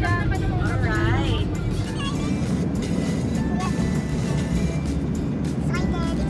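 Background pop song with a singing voice, over the steady low rumble of a car on the road.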